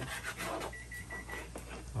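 A short run of quick, evenly spaced high electronic beeps, like an appliance or timer signal, with light cleaver knocks on a plastic cutting board early on.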